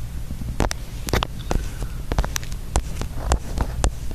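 Steady low hum of an airliner cabin, with irregular sharp clicks and taps scattered through it, about one every quarter to half second.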